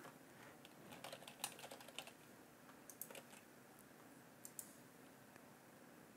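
Faint computer keyboard typing: a quick run of keystrokes about a second in, a few more around three seconds, and a last pair near four and a half seconds, with near silence between.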